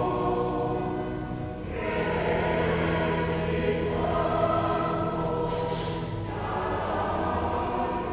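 Choir singing slow sacred music in long held chords, with a brief pause between phrases about one and a half seconds in.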